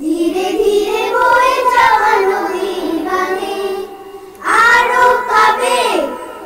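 Young children singing a Bengali song together, in two sung phrases with a brief breath between them about four seconds in.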